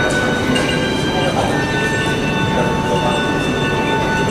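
Background music with long held notes over a steady loud noise of an airport terminal hall.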